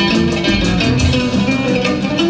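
Live folk-jazz band playing: plucked lute and guitar-like strings over upright double bass and a drum kit, with a steady run of drum strokes.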